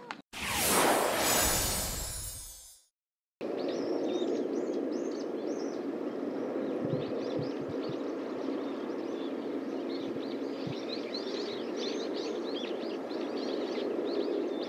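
A loud swoosh lasting about two and a half seconds fades out, followed by a moment of dead silence. From about three seconds in, steady outdoor golf-course ambience carries many birds chirping in quick, falling calls.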